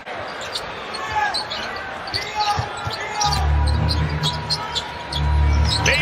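Live basketball game sound: sneakers squeaking and the ball bouncing on the hardwood court. About halfway through, a low pulsing bass comes in.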